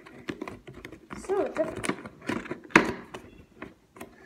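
Cardboard toy box being handled: a string of light clicks and taps from fingers and cardboard, with one louder knock a little before three seconds in, and a short spoken word.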